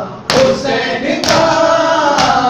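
A group of male voices chanting a noha in unison, kept in time by loud hand-on-chest slaps of matam, about one a second, with two strikes here.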